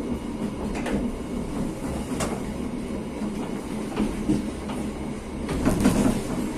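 Passenger train's carriage running along the track, heard from on board: a steady low rumble with sharp clacks from the wheels about a second in, about two seconds in, and a cluster near the end.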